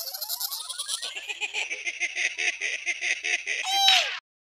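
Logo sting sound effect: a rapid run of clicks, about eight a second, over a high hiss. It ends with a short pitched swoop near the end.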